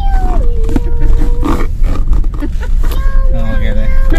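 A man singing long held notes inside a moving car, over the steady low rumble of the engine and road.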